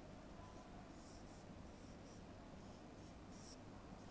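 Marker pen drawing lines on a board: about six short, faint strokes, each a brief hiss.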